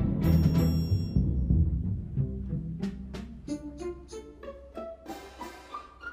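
Percussion with strings playing together: a loud timpani roll over low strings fades away over the first two or three seconds, then sparse single strikes and an upward run of short xylophone notes, with triangle, close the piece.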